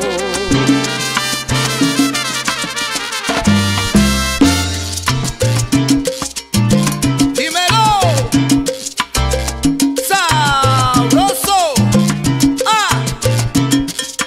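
Salsa music with a steady, repeating bass pattern. In the second half, melodic lines slide up and down in pitch.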